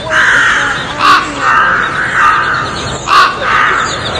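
A large flock of black birds calling harshly, a dense overlapping din with two louder, sharper calls about one second and three seconds in.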